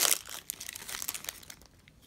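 Clear plastic wrapper of a trading-card pack crinkling as it is peeled off the stack of cards, a dense crackle that thins out and fades over the second half.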